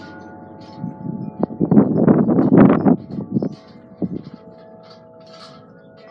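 Wind chimes ringing, their tones hanging on steadily; about a second in they clang loudly with many quick strikes for a couple of seconds, then settle back to soft ringing.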